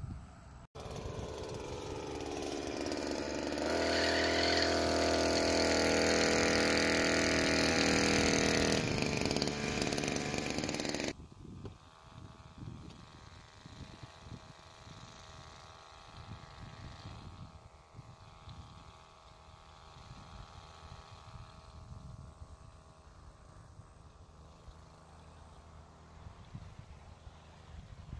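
Blade GP 767 motorized backpack sprayer's small two-stroke engine running close by, picking up speed over the first few seconds and then holding a loud, steady buzz. About eleven seconds in the sound drops abruptly to a much fainter, distant engine hum with wind noise on the microphone.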